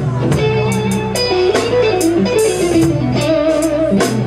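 Live blues band playing an instrumental passage between vocal lines: an electric guitar plays a moving melodic line over bass guitar and a drum kit, with cymbals struck in a steady beat.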